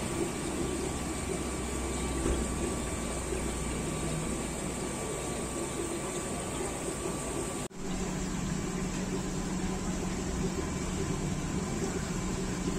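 Steady background of aquarium air pumps and water bubbling in the tanks, with a low hum. The sound cuts out for an instant nearly eight seconds in and comes back with a steadier low hum.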